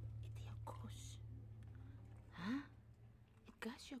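Faint background music fading out over the first couple of seconds, then a few soft, whispered words near the middle and end.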